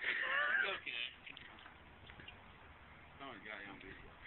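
A person's voice: a brief high call whose pitch glides up and down in the first second, then faint talk later on.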